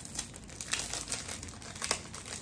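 Clear plastic card sleeve crinkling as a greeting card is handled and slid about in it: an irregular run of crackles, with a couple of sharper ones in the second half.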